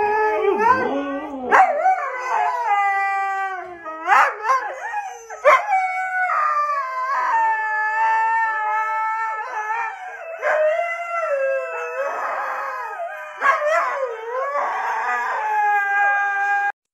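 A husky howling and 'talking' in long, wavering, drawn-out calls, several in a row with short breaks between them, each note sliding up and down in pitch before holding.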